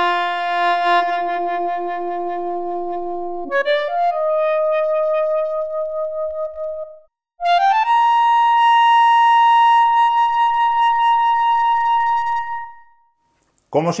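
Odisei Travel Sax, a 3D-printed digital saxophone, playing its synthesised sax sound with reverb. It plays three long held notes, each higher than the last, with vibrato made by the player's breath while the app's own vibrato is set to zero, and the instrument follows it. The last note dies away near the end.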